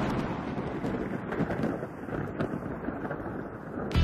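Thunderstorm sound: a steady rumble of thunder with wind and rain noise, a few faint crackles running through it.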